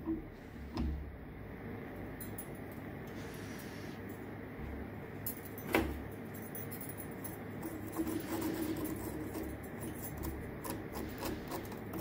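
Quiet handling noises of a metal sand-casting flask being opened: a knock about a second in and a sharper one about six seconds in, then a run of small clicks and scrapes near the end as a metal pick works at the packed casting sand around the fresh silver casting.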